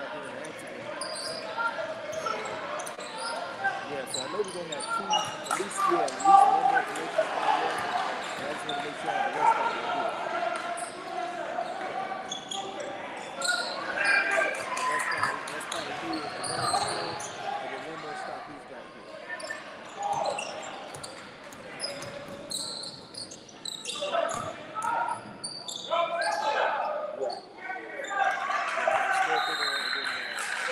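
Basketball bouncing on a hardwood gym floor, with many short sharp strikes throughout, over the voices of players and spectators in the gym.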